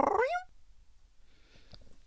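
A cat meowing once at the very start, a single short call of about half a second.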